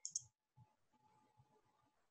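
A computer mouse button clicking: two short, light clicks close together right at the start, then near silence.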